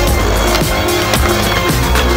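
Background music with a steady beat, with a skateboard rolling on pavement underneath.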